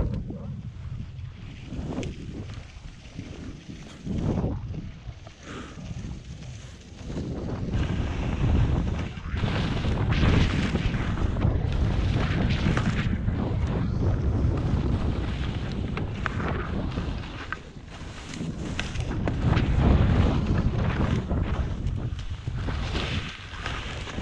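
Wind buffeting the microphone of a camera carried by a downhill skier, with the hiss of skis sliding and turning through soft snow. It is quieter at first and grows louder and gustier once the skier picks up speed, about a third of the way in.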